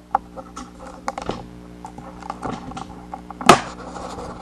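Scattered light clicks and taps of handling, with one louder knock about three and a half seconds in, over a faint steady hum.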